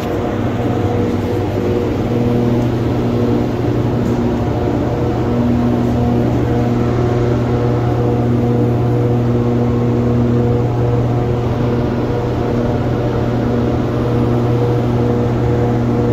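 Paint spray booth's air-handling fans running: a steady low hum with fainter higher tones that come and go.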